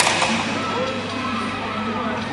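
Netball match broadcast playing over a hall's loudspeakers: a commentator's voice over crowd noise, echoing in the hall, with a sudden whoosh right at the start as a replay graphic comes on.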